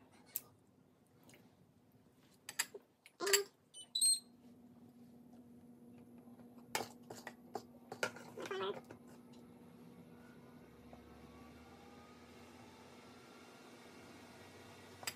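Hand-dredging chicken at a counter: scattered clinks and taps of a fork against bowls and a plate, with a couple of short voice-like sounds. About four seconds in a short high beep sounds, and a steady low hum starts and runs on under the rest.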